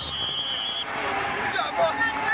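A referee's whistle held on one high note, blowing the play dead and cutting off just under a second in, over stadium crowd noise and scattered voices.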